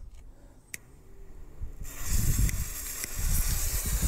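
A single click, then about two seconds in a smoke grenade ignites and starts hissing steadily, over a low rumble.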